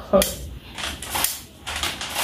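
A run of sharp, irregular plastic clicks and clacks as hair claw clips are handled.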